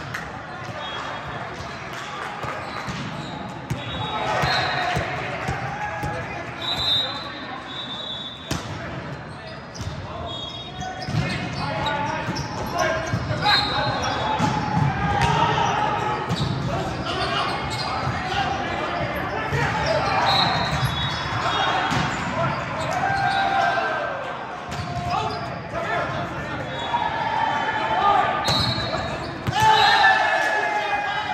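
Indoor volleyball game in an echoing gym: players' indistinct voices and calls, with the ball bouncing and being struck now and then.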